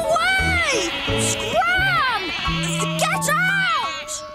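Cartoon sheep bleating: three drawn-out baas, each rising and falling in pitch, over a background music score.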